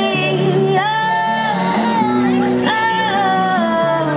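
A woman singing with acoustic guitar accompaniment through a small amplifier, holding two long notes in the phrase.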